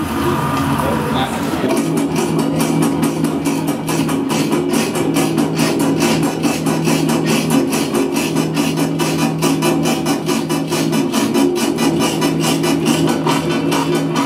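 Improvised experimental music: a steady low drone overlaid, from about two seconds in, by a fast, even pulse of clicks.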